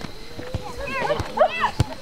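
Sideline spectators' voices calling out briefly during a youth soccer game, with a drawn-out call early on and two short shouts near the middle. Two sharp knocks come about half a second in and near the end.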